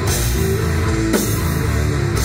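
A sludge/post-hardcore band playing live: heavy, distorted guitars and bass hold low sustained chords over a drum kit, with a sharp drum hit about a second in.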